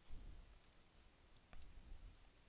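Near silence with a faint computer mouse click about one and a half seconds in, over low room hiss.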